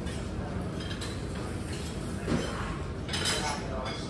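Dishes and metal cutlery clinking in a buffet dining room over steady room noise, with a couple of sharper clinks in the second half.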